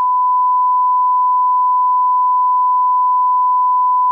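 Television test-card tone: a single loud, steady 1 kHz sine tone, held unbroken.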